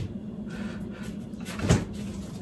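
A door thumping shut about a second and a half in, over a steady low hum.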